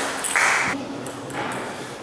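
Light clicks of a celluloid table tennis ball in a sports hall between points, with a short burst of noise about half a second in.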